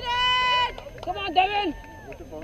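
A spectator's long, held, high-pitched yell of encouragement, ending under a second in, followed by a second shorter shout that bends in pitch.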